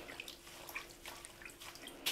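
Faint water drips and small splashes as hands stir and lift guelder rose flower heads in a sink full of water.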